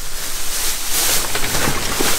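Thin plastic bag crinkling and rustling as it is tugged and handled, a steady rough hiss that peaks about a second in; the bag is tearing under the strain.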